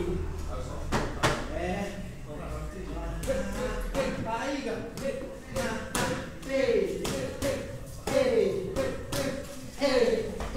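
Sharp slaps and thuds of Muay Thai punches and kicks landing on boxing gloves and bodies in sparring, a dozen or so scattered strikes, under an indistinct man's voice.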